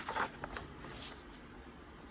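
A page of a picture book being turned by hand: a brief papery swish in the first half second, then faint room tone.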